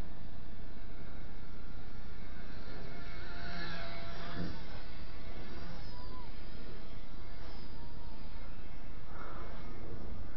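Steady wind noise on the microphone, with the faint, wavering whine of a small electric XK K120 RC helicopter's motors flying at a distance.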